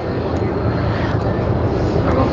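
Steady low rumbling noise, strongest in the bass, with no clear event standing out.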